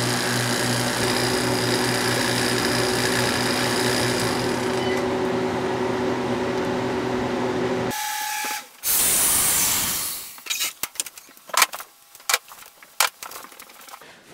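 Harvest Right freeze dryer and its vacuum pump running steadily in the drying cycle, a mechanical hum with a few steady tones. About eight seconds in the hum stops; a loud hiss follows for about a second, then scattered clicks and knocks.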